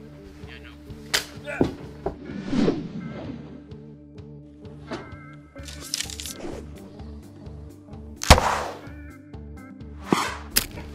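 Background music with sound-designed archery effects over it: a few clicks and a swish in the first few seconds, then a loud sharp hit about eight seconds in as an arrow is shot from a recurve bow.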